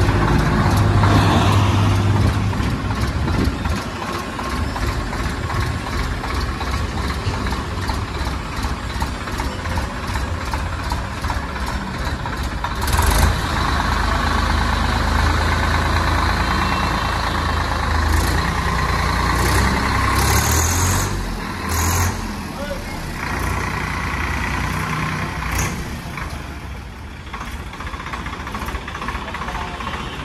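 Swaraj 855 FE tractor's three-cylinder diesel engine running at low revs as it is driven down steel loading ramps off a trailer, with one loud sharp clank about halfway through and a few lighter knocks after it.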